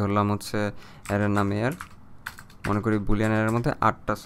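Keystrokes on a computer keyboard as a line of code is typed, a run of separate clicks falling between stretches of speech.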